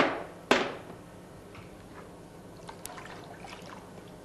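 Water in a plastic bucket swishing twice, about half a second apart, each swish dying away quickly, followed by a few faint small taps.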